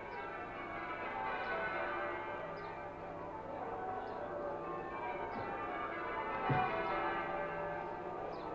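The bells of St Paul's Cathedral ringing a peal, their strikes overlapping in a continuous ring of many tones.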